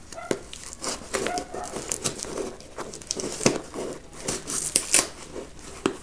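Packing tape and plastic crinkling and tearing in irregular crackles as a taped cardboard shipping box is worked open by hand.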